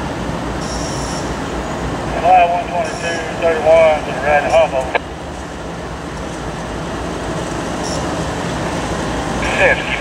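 Diesel locomotives of an approaching CSX freight train running, a steady rumble that grows louder over the second half. Radio scanner voice breaks in from about two seconds in and ends with a sharp click about five seconds in.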